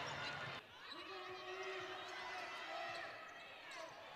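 Basketball game sound from the arena floor: a basketball bouncing on the hardwood court over a low murmur of crowd voices. The sound drops off sharply about half a second in, and a held voice-like tone carries through the middle.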